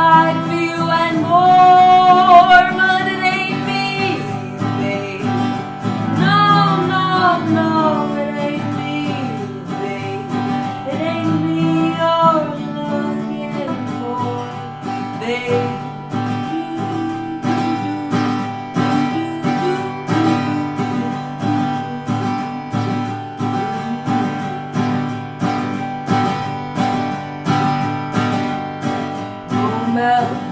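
Acoustic guitar strummed steadily, with a woman singing over it through the first half, then the guitar carrying on alone.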